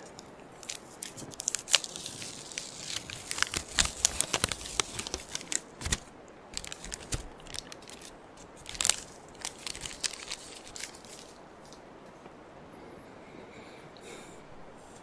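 Adhesive bandage wrapper being torn open and its paper backing peeled off: a run of close crinkles, crackles and small tearing sounds that thins out after about nine seconds.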